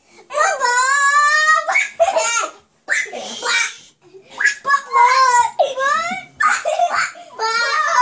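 Young children squealing and laughing in high-pitched, wordless cries: a long held squeal near the start, broken giggly bursts in the middle and more squeals near the end.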